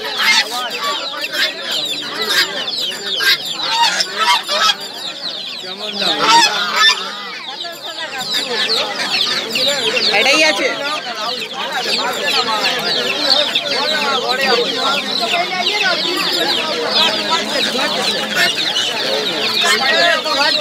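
Many chicks peeping in a dense, continuous high chatter, with hens clucking beneath it.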